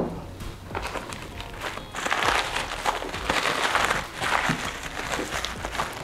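A sharp tap as a small wrench is set down on a tabletop, then crinkling and rustling of white packing wrap being pulled off a part, coming in uneven swells for about three seconds.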